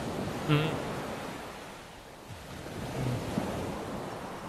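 Sea surf washing onto a beach: a steady hiss of waves that eases and then swells again about three seconds in.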